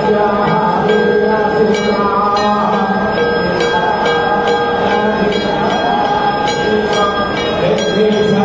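Temple bells ringing in a steady repeated rhythm, about two strikes a second, each ringing on briefly. Sustained devotional music plays beneath them.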